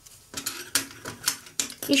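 An irregular run of light clicks and taps from gloved hands handling a cut orchid flower spike before trimming it.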